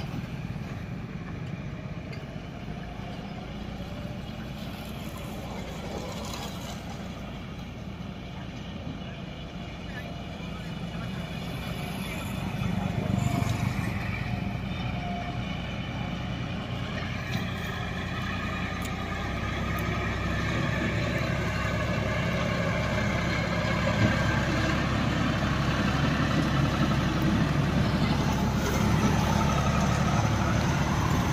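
Diesel engine of a John Deere tractor hauling two trailers loaded with sugarcane, running steadily as it approaches, its low hum growing louder toward the end. A motorcycle passes close by near the start.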